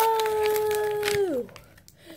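A girl's voice holding a long, drawn-out "nooo" at one steady pitch for about a second and a half, then sliding down as it trails off.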